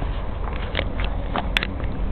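Outdoor ambience: a steady low rumble of wind on the microphone, with a few scattered clicks and knocks.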